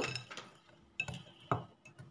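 Wire whisk clinking against a glass mixing bowl of batter: two sharp clinks, about one and one and a half seconds in, the first with a brief glassy ring.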